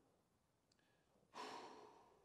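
Mostly near silence, then about halfway through a man lets out one long, breathy exhale like a sigh, which fades away, while he holds a deep kneeling lat stretch.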